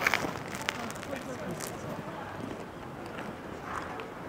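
Quiet city street background with faint voices, and a few soft crunches and clicks from biting into and chewing a crusty bread-roll sandwich, the strongest right at the start.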